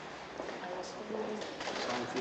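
Low, indistinct murmur of voices in a reverberant hall, with a few faint clicks.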